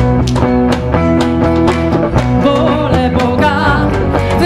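Live worship band playing an upbeat song with electric guitar and a steady beat.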